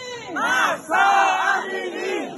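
A protest crowd shouting a chant together in two loud shouted phrases, the second longer than the first.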